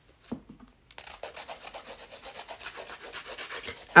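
Hand nail file, an 80/100 grit, rasping back and forth across an acrylic nail in quick, even strokes, starting about a second in after a light tap.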